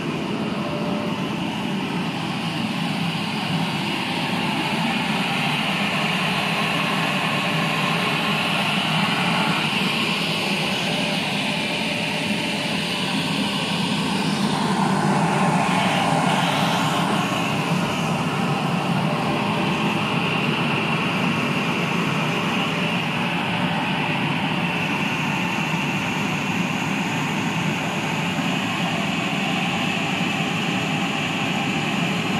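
A jumbo-roll paper slitting and rewinding machine running, a steady mechanical noise that swells a little about halfway through.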